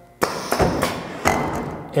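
Pneumatic end trimmer of a Grizzly automatic edgebander stroking through its cut as its limit switch is pressed, with the cutter motor off. A sudden thump comes about a fifth of a second in, then a few lighter knocks over a hiss that fades over about a second and a half.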